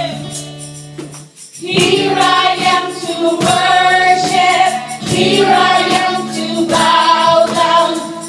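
Live worship song: several women singing together over acoustic guitar, electric guitar and keyboard, with light percussion hits. A held chord carries through a brief break in the singing, and the voices come back in about two seconds in.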